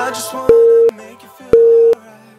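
Two loud electronic timer beeps, each a short steady tone, about a second apart, over quieter background music. This is a workout interval timer counting down to the change of exercise.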